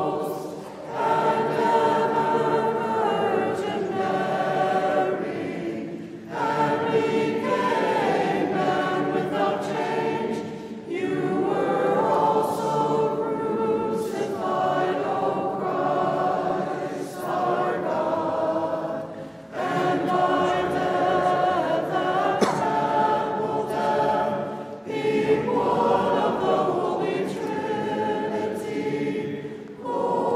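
A group of voices singing Byzantine liturgical chant a cappella, in phrases of several seconds separated by short pauses.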